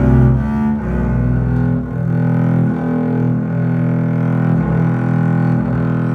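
Solo double bass played with the bow: a run of long held low notes, the pitch shifting roughly every second or so.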